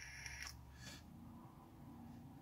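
Very faint breathy draws on a salt-nicotine vape pen, with two brief soft hisses about half a second apart early on, over a low steady car-cabin hum.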